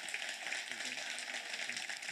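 Audience applauding, steady and fairly faint, with a few voices faintly under it.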